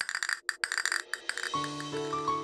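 Castanets mounted on a wooden block, tapped by hand, clicking fast in a quick rhythm. About one and a half seconds in, the clicking stops and gentle keyboard music begins.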